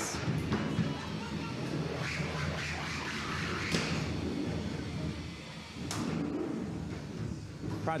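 Arena sound of a 3 lb combat robot fight: a steady low hum of the robots' motors, with a few sharp impact knocks, the loudest about six seconds in, over faint background voices.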